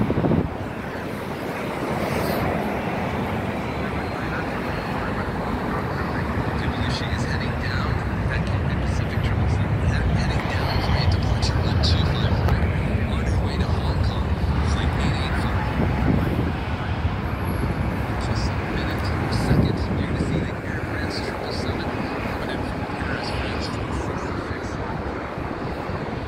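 A JetBlue jet airliner's engines, a broad rumble that builds to its loudest about halfway through and then slowly fades as the plane passes.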